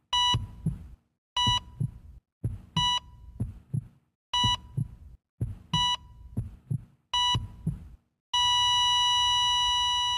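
Heart-monitor sound effect: heartbeat thumps, each with a short electronic beep, about every second and a half, six times. From about eight seconds in, one long unbroken flatline tone at the same pitch.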